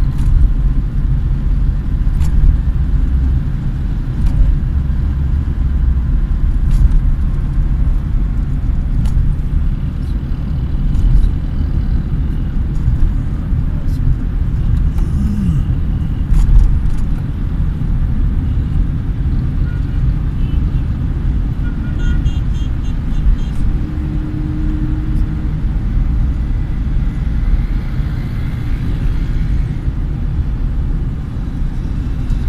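Steady low rumble of a car's engine and tyres heard from inside the cabin while driving, with scattered faint clicks.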